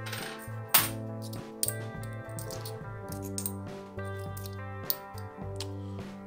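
Background music, with a few sharp metallic clinks of 50p coins being handled and set down on a table. The loudest clink comes just under a second in.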